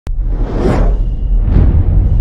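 Logo-intro sound effects: a sharp click, then two whooshes about a second apart over a steady deep bass drone.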